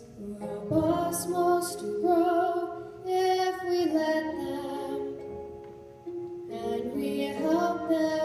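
Young female voices singing a slow ballad duet over a steady accompaniment, holding long notes with vibrato. The phrase fades about six seconds in, and the next one swells up after it.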